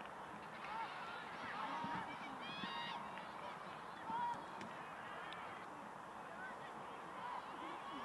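Footballers and spectators shouting and calling across the pitch: many short, overlapping cries heard at a distance.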